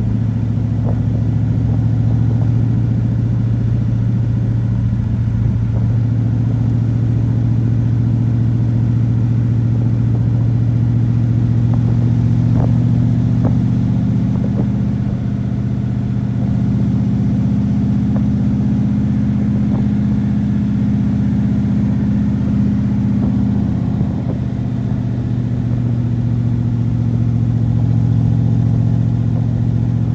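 1974 Corvette's V8 running through its side pipes as the car cruises, a loud, steady low drone with small shifts in pitch, heard from inside the open cockpit with the top off.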